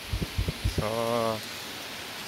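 Several short low thumps in the first part, then a voice says a drawn-out "so", over a steady background hiss.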